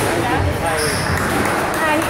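Squash ball being struck and hitting the court walls, under chatter of voices in a large hall.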